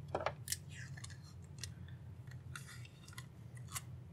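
Kapton (polyimide) tape being cut and handled: a few sharp, faint clicks and snips, with a short crinkly rustle a little after the middle.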